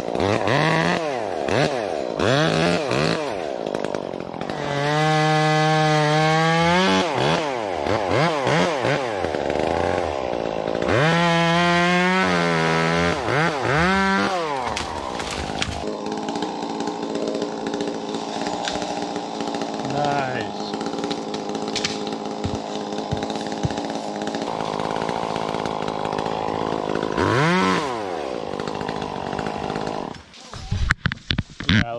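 Chainsaw up in a tree, its engine revved in quick bursts, then held at high revs twice for about two seconds each, then running lower and steadier with a few more short revs.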